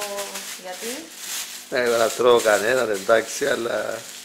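Mostly speech: a voice talking in a kitchen, in a burst from a little under two seconds in, with quieter handling sound before it as small plastic bags of dough are handled.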